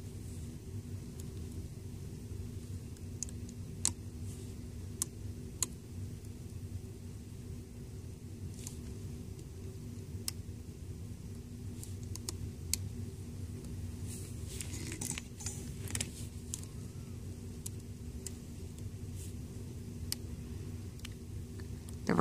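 Scattered light clicks and ticks of a metal loom hook against plastic loom pegs and rubber bands as the bands are looped up and over, a few at a time with a short cluster about two-thirds of the way through, over a steady low background hum.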